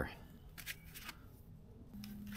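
Faint handling sounds of a plastic tank dash panel and a screwdriver, with a couple of light clicks a little over half a second in.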